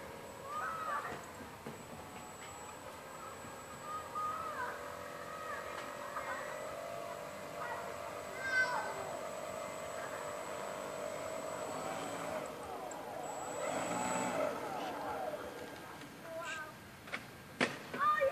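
Faint distant voices over quiet outdoor ambience, with a steady faint hum through the middle.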